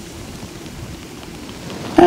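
Steady hiss of wind outdoors, with a faint, uneven low rumble.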